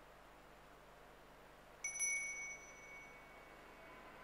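A small altar bell struck twice in quick succession, a bright high ring that fades away over about two seconds.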